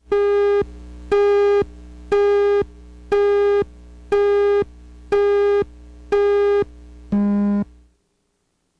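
Video countdown leader beeps: eight buzzy electronic tones, one a second and each about half a second long, the last one lower in pitch, over a quieter steady hum.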